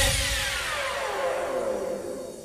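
The tail of a Bhojpuri Holi song after its last beat: a noisy sweep falling in pitch, over a held tone, fades away.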